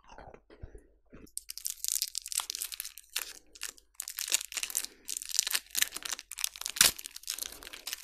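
Close-miked eating sounds: a few soft wet mouth sounds, then from about a second and a half in, dense crackling crunches in clusters with short pauses between them.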